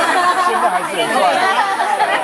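Several people talking at once: a small seated group chattering, with voices overlapping.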